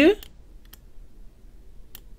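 A man's voice finishes a word at the start, then a quiet room with two faint, short computer mouse clicks, one about a second in and one near the end.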